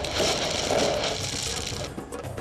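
A knife ripping open a burlap sack: a continuous coarse rasping tear that stops near the end.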